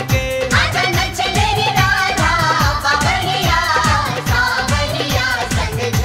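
Hindi Krishna bhajan: a voice singing a wavering melody over a quick, steady beat of low drum strokes that each drop in pitch.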